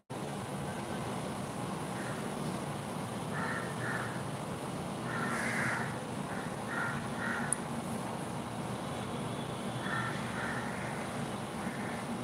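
Bird calls in several short bursts, a few at a time, over a steady background hiss.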